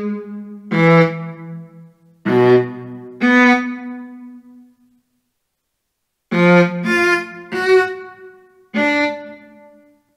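Sampled viola notes from MuseScore's playback, one separate note at a time, sounded as each note is entered into the score. Each starts sharply and dies away over a second or so. There are three in the first half, a pause of about a second and a half, then four in quicker succession.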